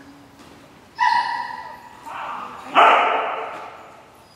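Dog barking: a high, drawn-out yelp about a second in, then a louder bark near three seconds that rings on in the large metal-walled hall.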